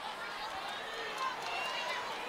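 Arena crowd noise at a basketball game: a steady murmur of many voices in a large hall, heard faintly under a radio broadcast.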